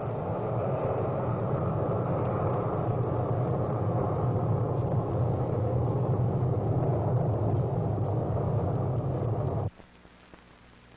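Polaris missile's solid-fuel rocket motor rumbling steadily as the missile climbs after launch, growing slightly louder, then cutting off suddenly near the end.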